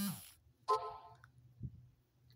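A woman's spoken word trailing off, then a short click with a brief pitched ring about a second in and a soft low thump near the end, over a faint steady hum.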